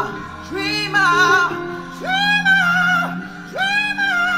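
A male singer holding long, high sung notes with vibrato, climbing to G#5, a note in the range of a female voice, over steady held accompaniment chords.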